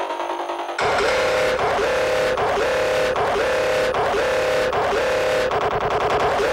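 Hard techno track at 153 BPM. A thin, filtered texture suddenly opens up to full range just under a second in. After that, a short synth tone repeats about every three-quarters of a second over a dense, noisy backing.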